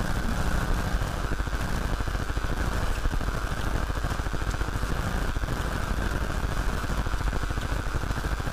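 Steady low background noise with a constant hum, picked up by the recording microphone in the pause between spoken instructions.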